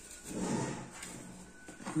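A short, soft scraping slide as a glazed clay bowl of risen, sticky bread dough is shifted on the worktop. It swells about half a second in and fades away within a second.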